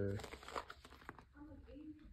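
Faint rustle and crinkle of a large glossy art-book page being handled and turned, with a faint low hum near the end.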